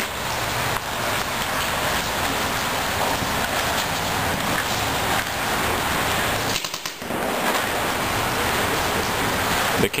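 Paintball markers firing in rapid strings during an indoor game, a dense continuous rattle of shots with voices mixed in; it breaks off briefly about seven seconds in.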